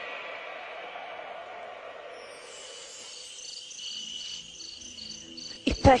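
Violin music fades away, and about two seconds in, cricket chirping comes in as a recorded backing effect: evenly repeating high chirps over a steady high trill. Near the end comes one loud thump.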